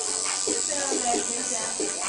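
Electric tattoo machine running with a steady high buzz, switched on just before and held through, over background voices and music.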